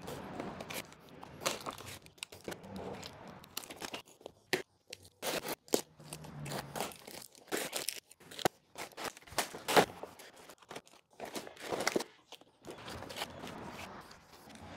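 A long cardboard shipping box being cut and torn open by hand, with a knife, in an irregular run of tearing and crinkling noises broken by sharp clicks and scrapes.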